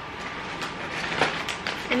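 Rustling and crinkling as a plastic snack pouch is pulled out of a reusable shopping bag and handled. The sharp crinkles come in the second half.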